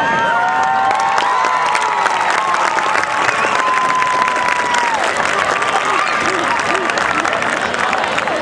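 Crowd cheering and applauding as the routine's music stops: dense clapping throughout, with several long, high-pitched shouts over it for the first five seconds or so.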